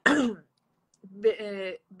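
A person clears their throat once: a short, rough burst with a falling pitch right at the start.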